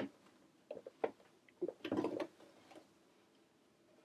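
Scattered soft clicks and rustles of gathered nylon mesh being handled and eased under a sewing machine's presser foot, with a denser, louder cluster about two seconds in.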